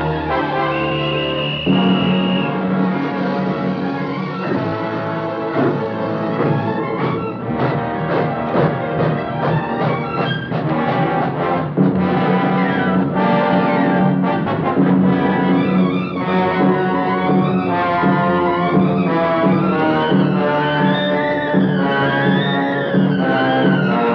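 Dramatic orchestral film score with brass to the fore, with rising and falling figures building in the last several seconds.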